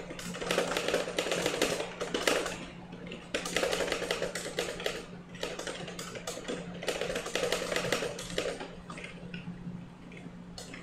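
Fast typing on a computer keyboard: three bursts of rapid keystrokes separated by brief pauses.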